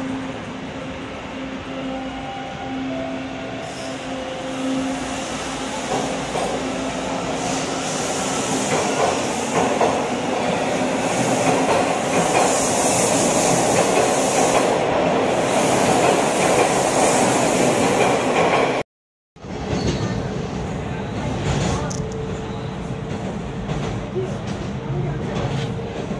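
Bombardier T1 subway train in a station, its motor whine and wheel-on-rail noise growing louder, with a high hiss at the loudest part. A sudden break about 19 seconds in is followed by steadier running noise heard from aboard a train.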